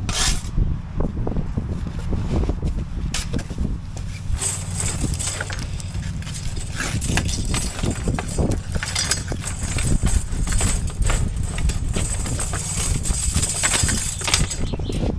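Blocklaying work: repeated knocks, taps and scrapes of steel trowels on concrete blocks and mortar, over a steady low hum.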